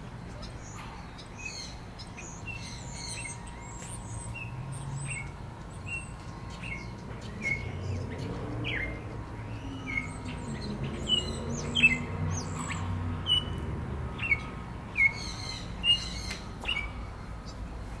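Small captive birds chirping, with short sharp calls repeated several times a second; the loudest chirps come in the second half.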